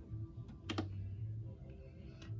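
Button clicks on a Jackery Explorer 1000 portable power station as its display button is pressed to wake the screen: a faint click, then two quick sharp clicks a little past halfway, over a steady low hum.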